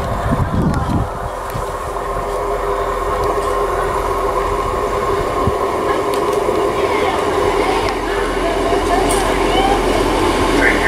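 Class 158 diesel multiple unit approaching the station, its steady engine and rail noise slowly growing louder as it nears.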